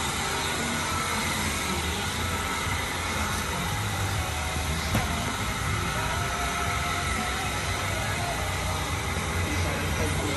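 Steady background noise in a garage workshop: an even hiss over a low rumble, with one faint click about five seconds in.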